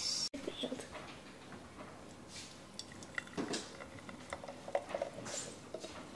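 Thick fruit smoothie poured from a blender into glass mason jars: soft splatting as the stream lands, with a few small clicks of glass. There is a brief dropout just after the start, where the picture cuts.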